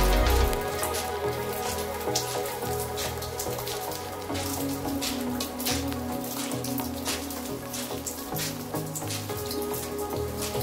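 Rain falling, with irregular drops and drips pattering on surfaces, under soft background music whose heavy bass drops out about half a second in.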